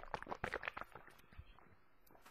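Faint, irregular clicks and small wet mouth sounds of a man sipping water through a straw and swallowing, close to a headset microphone. They come quickly at first and thin out about a second and a half in.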